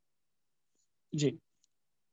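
Dead silence between speakers on a video call, broken just after a second in by one brief spoken 'ji'.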